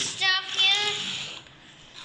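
A child's voice singing a short tune that trails off about one and a half seconds in.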